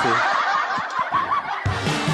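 A man laughing in short bursts, with backing music coming in near the end.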